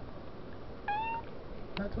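A domestic cat gives one short meow about a second in, rising slightly in pitch at the end.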